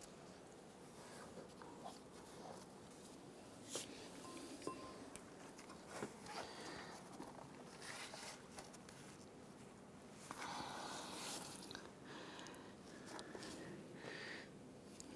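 Faint handling sounds of a serpentine belt being worked onto its pulleys: scattered light clicks and rubbing, with a longer scraping stretch about ten seconds in.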